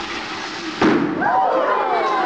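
A ping pong ball filled with liquid nitrogen bursting in warm water with a single sharp bang about a second in, blown apart as the nitrogen boils into gas and the pressure rises. Right after it come excited voices from the audience.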